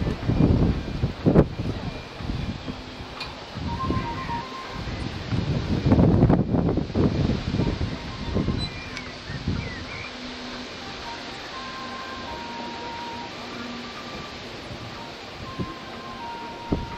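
Wind buffeting the microphone in irregular gusts, heaviest in the first half, with faint background music of long held notes.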